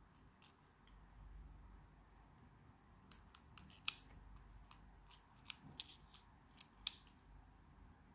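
Sharp plastic clicks of a multi-colour ballpoint pen's slider buttons being pushed down and snapped back, a dozen or so irregular clicks starting about three seconds in.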